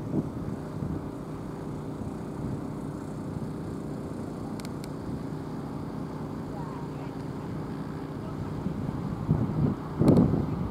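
A steady engine-like hum, with a person's voice briefly at the start and again near the end.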